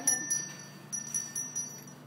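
A Salvation Army handbell rung by a horse, a run of uneven clanging strikes, each one ringing on at the same bright pitch, the strikes spacing out and softening toward the end.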